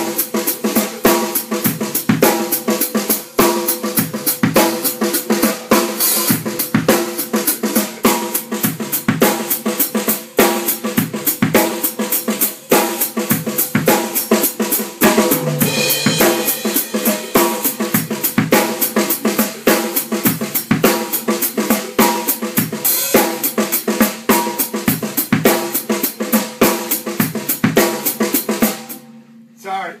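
Drum kit played in a steady, busy groove: snare, bass drum, hi-hat and cymbals. It stops abruptly about a second before the end.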